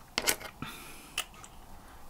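A few light clicks and taps of desk items being handled, the loudest just after the start and another a little past the middle.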